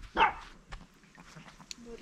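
A Chihuahua puppy gives one short, sharp bark about a quarter second in, followed by faint rustling.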